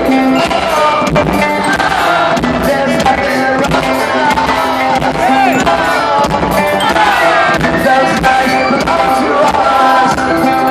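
Live rock band playing through an arena PA with a singer's voice over the music, loud and continuous.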